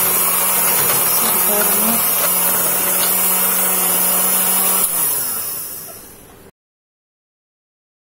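Electric hand mixer running steadily with a constant hum as its beaters whip chocolate cake batter; about five seconds in it is switched off and winds down, its hum dropping in pitch as it fades.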